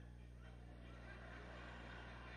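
Near silence: room tone with a steady low electrical hum.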